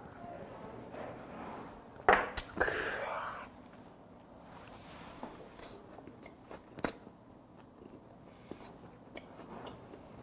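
Close-miked eating: a person biting and chewing a mouthful of raw beef brisket wrapped with cheese and vegetables. There are wet mouth clicks, with a louder burst of sound about two seconds in and a sharper click near the seventh second.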